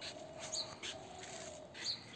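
A dog whining faintly, one drawn-out whine lasting about a second and a half, with a few short high chirps.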